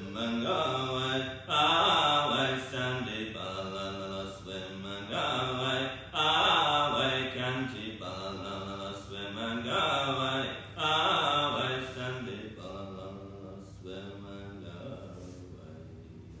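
Voices chanting a repeated phrase, with the loud swells coming about every four and a half seconds and the chant dying away over the last few seconds.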